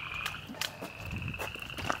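A chorus of frogs calling steadily, a continuous high ringing drone, with a few faint clicks over it.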